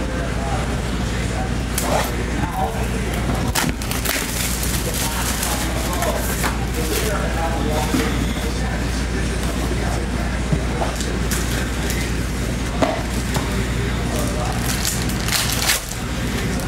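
Plastic shrink wrap crinkling and crackling as a trading-card box is unwrapped and opened, with a few sharper cracks among the steady crinkle, over a low steady hum.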